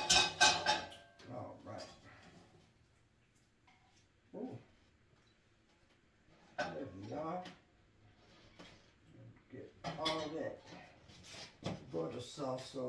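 A clatter of plates and cutlery being handled during the first second or so, the loudest thing here. Short stretches of indistinct speech follow, with quiet gaps between.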